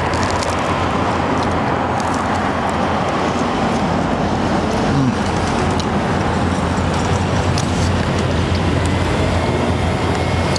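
Street traffic: cars passing in a steady wash of road noise with a low rumble.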